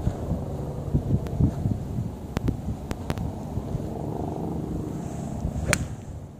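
Wind rumbling on the microphone, with a few faint clicks around the middle. Near the end, a golf club strikes the ball once with a sharp crack, a full swing that sends the ball a long way.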